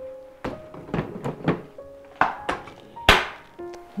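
Metal inner pot being set into a Cuckoo electric pressure rice cooker and the lid shut: a series of clunks and knocks, the loudest and sharpest about three seconds in, over soft background music.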